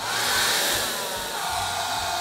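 Handheld hair dryer switching on and blowing a steady rush of air over a freshly brushed acrylic wash on EVA foam, to speed its drying. Its motor whine slides down in pitch over the first second and a half, then holds steady.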